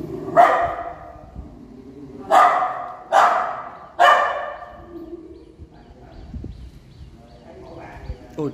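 Small white dog barking four loud, sharp barks in the first half, each dying away with a short echo off the bare brick walls.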